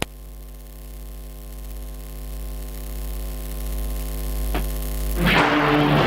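Electrical mains hum from a stage sound system, steady and slowly growing louder, with a click at the start and a faint click about four and a half seconds in. Music starts loudly through the speakers near the end.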